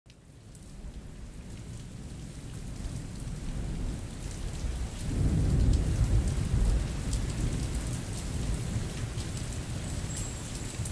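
Steady rain, fading in at the start, with a deep roll of thunder that swells about five seconds in and dies away over the next two seconds.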